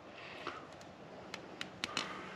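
Faint handling of a plastic drip-irrigation emitter and its black tubing as the barbed emitter is forced into the tight tube, with a few small clicks in the second half.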